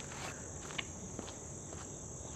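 Insects chirring in a steady, high-pitched drone, with a few faint clicks partway through.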